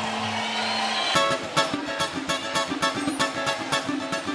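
Live samba band: after a brief lull, strummed strings and hand percussion come in about a second in and keep a fast, even samba rhythm.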